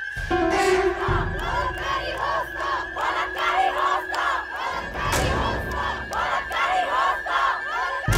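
Crowd of protesters chanting slogans together, a loud rhythmic shouted chant.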